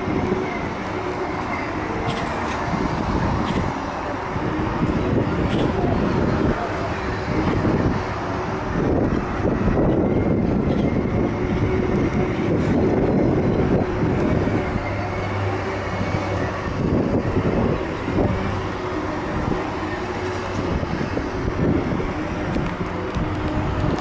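Segway personal transporters' electric drive motors whining steadily in a few high, slightly wavering tones as they ride, over a low rumbling noise.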